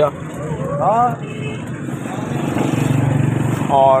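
Steady low hum of a running motor-vehicle engine, growing louder in the second half and then easing off.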